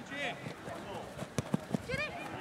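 Faint shouting and calling voices of players and spectators around a football pitch, with three short knocks in quick succession a little past halfway.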